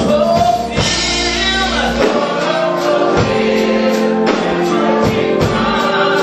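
Gospel mass choir singing held chords with a live band, drums keeping a steady beat.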